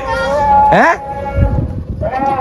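Children's excited shouting voices, one calling "mana" (where?) with a held note that sweeps sharply up in pitch about a second in.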